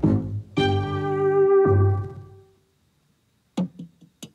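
Live electronic instrumental music with keyboard-like chords. The chords are held and die away about two and a half seconds in, followed by a brief silence, then a run of short, separate notes near the end.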